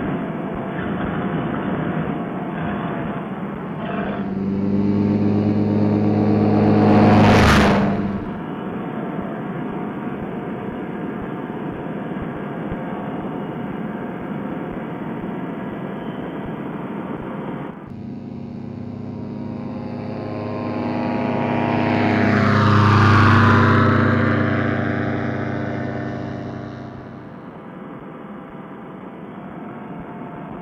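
Paramotor trike engine running at high power through the takeoff roll and climb-out, a steady propeller-engine drone. The sound swells loud twice, peaking about seven seconds in and again for several seconds past the middle.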